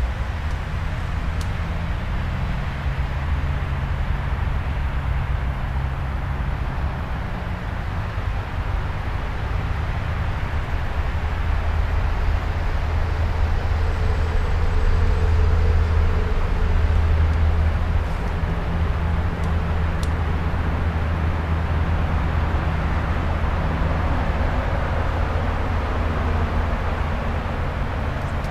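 Steady outdoor background noise with a deep low rumble, swelling a little in the middle.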